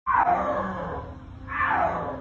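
Snow leopard calling twice, open-mouthed, with two drawn-out calls that each fall in pitch, the second starting about one and a half seconds in. It is a yowling call, not a roar: snow leopards cannot roar.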